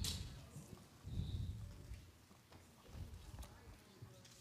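Faint, irregular soft thumps and knocks of footsteps on a stage floor, over quiet room tone.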